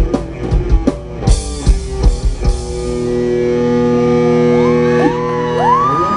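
Heavy metal band playing live: drum kit and distorted guitars hitting together in an even, pounding pattern, then a final chord held and left ringing, with a rising whine coming in near the end.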